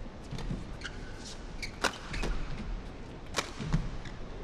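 Badminton racket strikes on a shuttlecock during a fast doubles rally: a series of sharp cracks, the loudest about two seconds in and again about three and a half seconds in, with fainter hits between.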